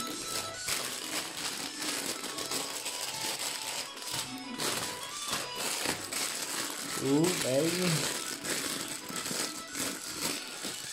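Loose LEGO pieces rattling and clicking inside sealed plastic bags as they are picked up and handled, with the bag plastic crinkling. A short hummed or sung voice glides up and down about seven seconds in.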